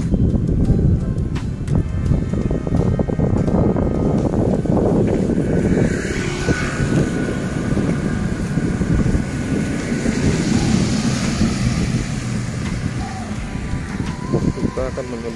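A motorcycle rides by on the rain-wet road, its tyres hissing on the wet tarmac from about six seconds in and fading near the end, over a constant low rumble.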